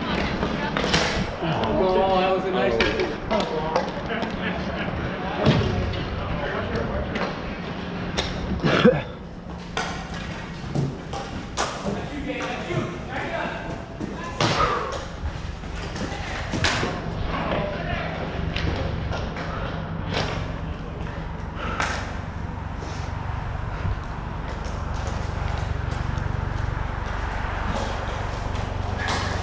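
Ball hockey in play on a plastic sport-court floor: scattered sharp knocks and thuds of sticks striking the ball, about a dozen, the loudest a little past the middle, with players' voices calling in the background over a steady low rumble.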